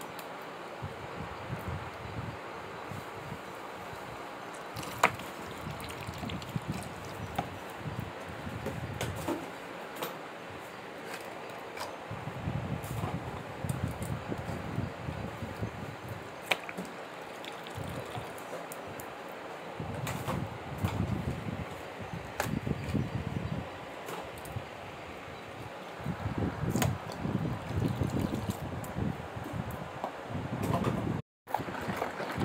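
Thick, soapy liquid being stirred and worked in a large mixing bowl: irregular wet sloshing in bouts that grow busier near the end, with scattered light clicks of small plastic bottles being handled.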